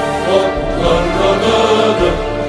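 Choir singing an anthem in Arabic over an instrumental arrangement.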